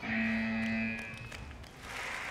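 Electronic buzzer giving one steady, low-pitched tone for about a second, the signal that the round has ended.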